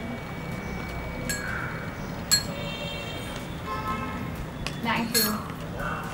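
A few sharp clinks of a metal spoon against a small glass bowl. The loudest comes a bit over two seconds in, and some are followed by brief ringing.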